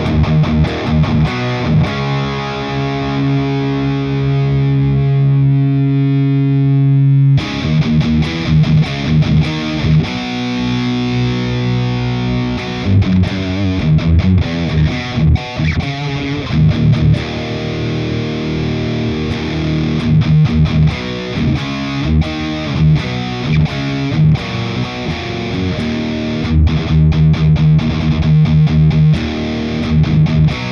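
Distorted electric guitar played through a Hotone Mojo Attack amp pedal with its volume turned all the way up: a chord held ringing for about seven seconds, then busier riffing with short bursts of notes and chords.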